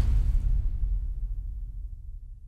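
Deep low rumble of an outro logo sound effect, the tail of a whoosh-and-boom hit, fading away steadily.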